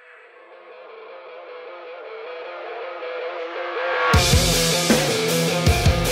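Song intro that swells in thin and bass-less, slowly brightening and growing louder, until the full band with bass and drums comes in about four seconds in.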